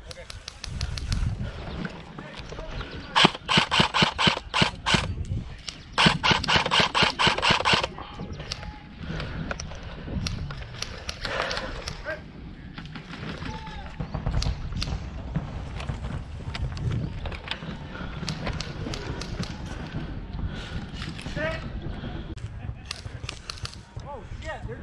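Airsoft rifle firing on full auto: two long bursts of rapid, evenly spaced shots, each about two seconds, a few seconds in, after a shorter burst at the start. Scattered fainter shots follow.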